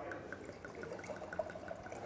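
Red wine being poured from a bottle into a stemmed wine glass: a quiet pouring stream with a quick, even run of small glugs from the bottle neck.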